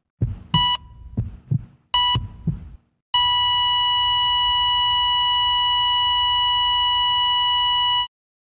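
Heartbeat sound effect with a heart monitor beeping twice, then a continuous flatline tone from about three seconds in that holds steady until it cuts off, the conventional signal that the heart has stopped.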